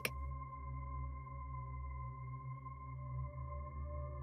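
Dark ambient background music: a steady drone of sustained tones over a low rumble, without a beat.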